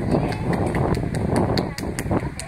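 Strong wind buffeting the camera's microphone: a loud, rough low rumble with scattered short sharp clicks.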